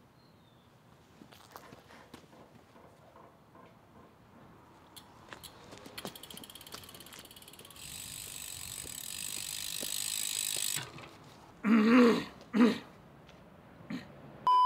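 Bicycle rear-hub freewheel ratcheting as a bike coasts in: scattered clicks turn into rapid, even ticking and then a buzz that grows louder and cuts off suddenly after about ten seconds. Two short loud vocal sounds follow near the end.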